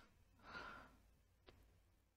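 Near silence, with a faint breath about half a second in and a tiny click about halfway through.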